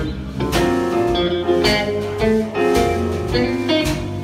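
Live band playing: electric guitar leading over a drum kit and keyboard, with regular drum hits keeping the beat.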